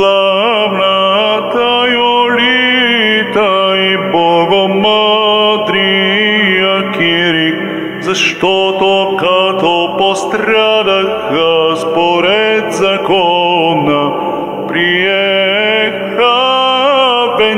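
Male cantor singing an Orthodox church chant, with long wordless-sounding melodic runs that rise and fall, over a steady low held drone note.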